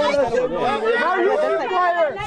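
Several people talking over one another in a heated argument, with no other sound standing out.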